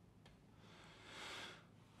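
Near silence: room tone in a speaker's pause, with a faint breath just past the middle.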